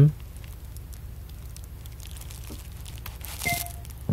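Faint handling noise over a steady low hum: a few small clicks, then a short crinkle and scrape about three and a half seconds in as the power cable is plugged into the homemade Arduino Renix engine monitor.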